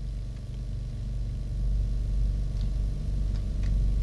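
A steady low hum or rumble that swells a little in the middle, with a few faint ticks.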